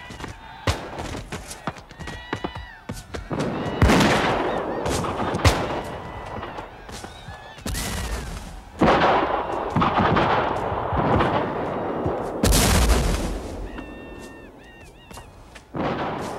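Gunfire sound effects: many shots cracking in ragged volleys, with a heavy boom about twelve and a half seconds in. High wavering pitched sounds come through twice, early and near the end.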